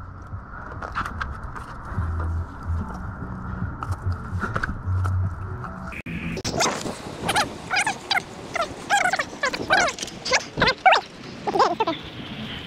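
An animal calling in a quick run of short, pitched calls that glide up and down, starting about halfway through, after a stretch of steady background noise.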